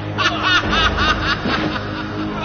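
A person laughing in a quick run of short "ha" bursts, about five a second, over background music.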